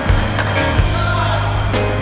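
Skateboard wheels rolling and scraping on a concrete bowl, heard under background music, with a few sharp clacks.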